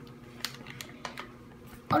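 A few faint, scattered light clicks from hands handling small plastic toy figures and crinkly foil blind-bag packets on a tabletop, with a voice starting just at the end.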